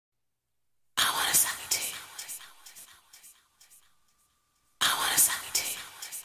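Whispered vocal phrase in the intro of a 1996 house record, heard twice about four seconds apart, the first coming in after a second of silence. Each phrase trails off in fading echoes.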